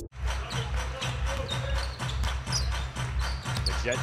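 A basketball being dribbled on a hardwood court, in a repeated series of low thumps, over arena background music.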